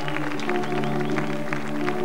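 Stage orchestra holding a steady, sustained chord as background music, with many short, light strokes over it.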